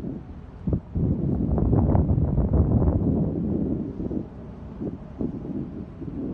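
Wind buffeting the microphone: an uneven low rumble in gusts, heaviest from about one to three seconds in.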